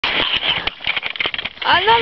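An English bulldog scrambling on a wooden ramp: a quick run of scratchy clicks and scrapes from its claws and body on the boards. Near the end a woman says 'Ah non'.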